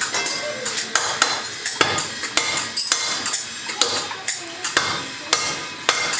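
Hand hammer striking a metal pan lid held on a steel post, fixing a small metal fitting to it. Irregular sharp metallic blows, a few a second, each ringing briefly.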